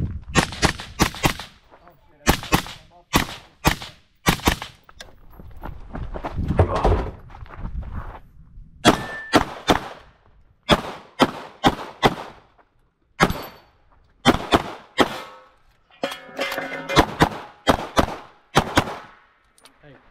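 Gunshots fired in quick strings with short pauses between them, close and loud, from a shooter running a 3-gun stage: a long gun first, then a CZ Shadow 2 pistol.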